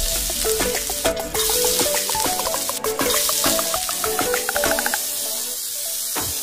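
Julienned carrots sizzling in hot oil in a nonstick pan while being stirred with a wooden spatula, over background music with a rising run of short notes.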